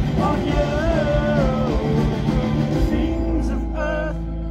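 Live rock band with a singer, heard from the audience over the PA. A sung melody runs over a steady drum beat until about three seconds in, when the beat drops out, leaving a held low bass note under the voice.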